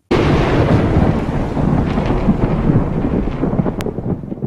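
A loud, steady rumbling noise that starts suddenly, with a single sharp click near the end.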